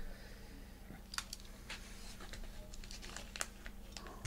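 Faint crinkling and scattered light clicks of a kraft paper bubble mailer being handled as it is opened, over a low steady hum.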